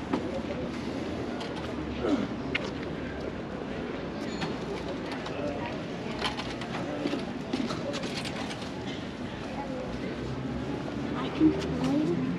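Outdoor ambience of a busy pedestrian plaza: passersby talking in the distance, with birds calling, and scattered light clicks and footsteps.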